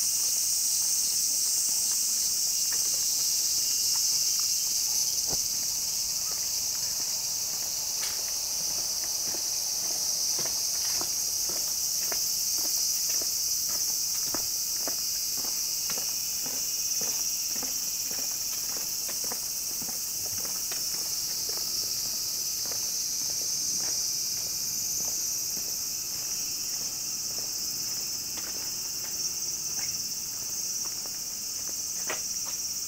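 Cicadas buzzing in a steady, high, unbroken drone. Over it, footsteps on paving at a little under two steps a second, plainest through the middle.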